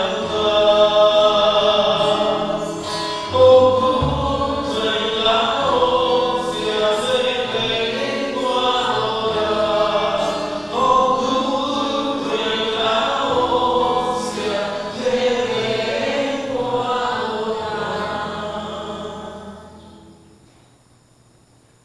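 Choir singing a slow, sustained sacred chant in several voice parts, fading out near the end.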